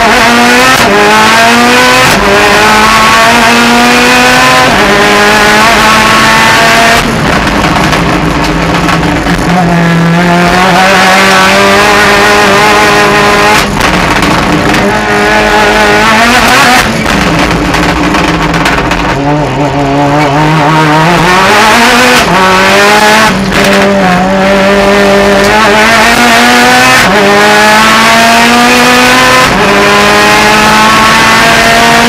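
Mitsubishi Lancer race car's engine at hard throttle, heard from inside the cabin. The pitch climbs again and again, broken off every few seconds by a quick gear change, and drops lower a few times before rising again.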